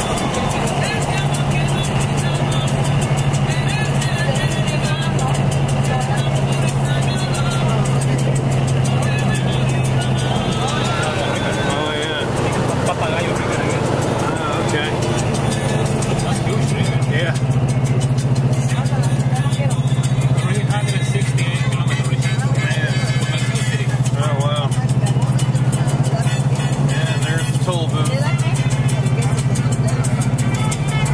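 Music with vocals playing on the car stereo, heard inside a moving car over a steady low drone of engine and road noise.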